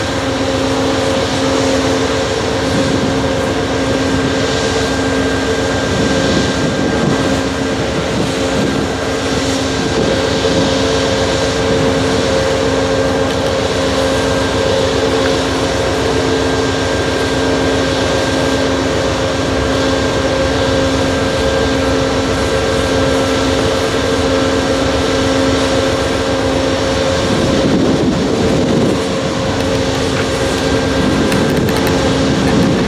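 Stopped Amtrak passenger train idling: a steady drone from its diesel locomotive, with several held tones that do not change.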